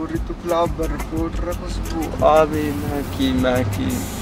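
Low, indistinct voices talking inside a car cabin over the steady low hum of the idling engine.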